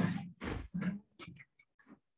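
Two short, quiet vocal sounds from a man's voice in the first second, then a few faint clicks.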